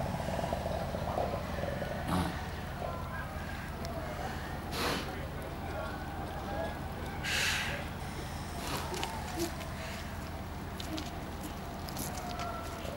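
Antarctic fur seals calling with low, wavering cries, with two breathy hisses about five and seven and a half seconds in.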